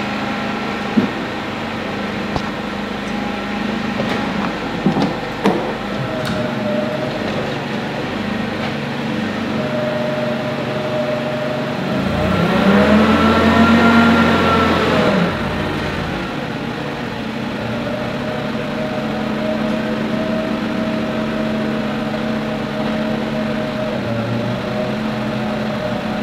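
Forklift engine running steadily, with a few light knocks in the first few seconds. About halfway through it revs up for a few seconds and settles back down, the engine being worked to drive the hydraulic mast that raises the work platform.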